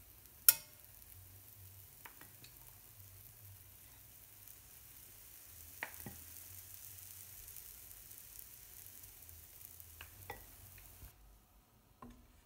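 Ricotta pancake batter sizzling in a non-stick frying pan, a steady faint hiss that cuts off shortly before the end. A sharp click about half a second in, the loudest sound, and a few lighter knocks later come from the utensil against the pan.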